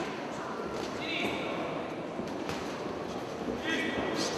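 Indistinct spectators' voices in a hall during an amateur boxing bout, with a high-pitched shout about a second in and another near the end.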